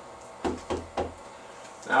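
Three quick knocks of a squeegee on a pole against the window, about a quarter second apart, each with a dull low thud.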